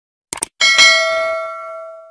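A quick double mouse click, then a bell ding that rings and fades away over about a second and a half: the click-and-bell sound effect of a YouTube subscribe-button animation.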